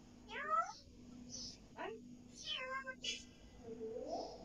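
African grey parrot mimicking a cat's meow: several short meow-like calls that bend up and down in pitch, spread through the few seconds, with a brief high chirp between them.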